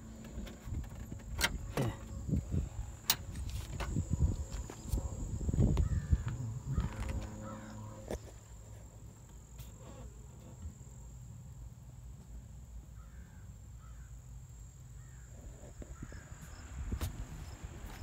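Scattered clicks and knocks of metal parts being handled as a car's power antenna assembly is worked loose in the trunk, over a low steady hum. The knocks thin out about halfway, leaving a quieter stretch.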